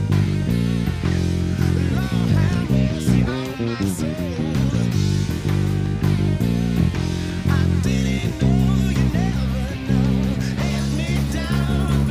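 Squier Precision electric bass playing a blues-rock bass line of changing plucked notes, over a full-band recording of the song with guitar and a singing voice.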